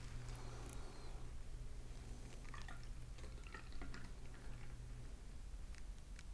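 Raspberry lambic being poured from a small glass bottle into a tall beer glass: a faint trickle and drips of liquid.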